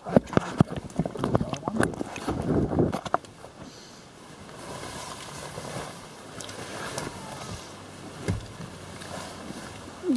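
Camera being handled close to the microphone, with rustling and knocks for about three seconds, then a quieter steady hiss with faint voices.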